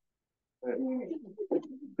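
A voice saying a drawn-out "네" ("yes") after a brief silence, then more speech.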